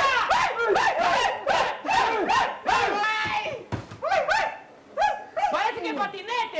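A person's voice crying out in a fast string of short, yelp-like 'ah!' cries, several a second, breaking off briefly near the end.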